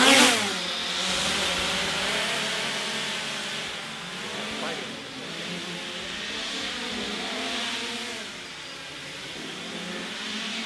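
Small quadcopter's electric motors and guarded propellers sounding loudest at lift-off at the start, then buzzing in flight, the pitch wavering up and down as the motors speed up and slow to steer it.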